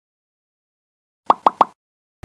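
Three quick cartoon-style 'pop' sound effects in a row from an animated logo intro, a little over a second in.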